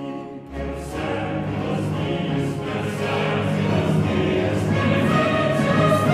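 French Baroque grand motet sung by a mixed choir with period orchestra. About half a second in, the full choir and the bass instruments come in, and the sound grows steadily fuller.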